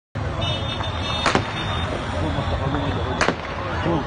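Two sharp bangs, about two seconds apart, over the steady din of a crowded street with voices and vehicles.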